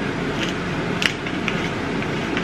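Tall wooden pepper mill being twisted by hand, grinding black peppercorns: a continuous grinding with a few sharper cracks.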